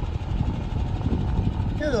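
Irregular low rumble of wind buffeting the microphone outdoors, with a man starting to talk near the end.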